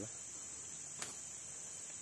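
Steady high-pitched chorus of insects, with a single faint click about a second in.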